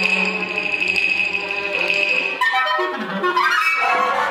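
Contemporary chamber ensemble of winds, strings, pianos and percussion playing: long sustained tones, then about halfway through the texture shifts to busier, changing pitches with a falling glide.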